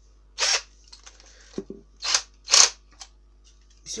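Interskol DA-12ER-01 12 V cordless drill/driver's motor and chuck spinning in several brief whirrs as the trigger is pulled in short bursts. The drill is running again now that the battery pack's broken cell contact has been resoldered.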